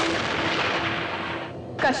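A dense, noisy rumble of a dramatic sound effect, fading away over about a second and a half, then a woman's voice suddenly starts calling a name near the end.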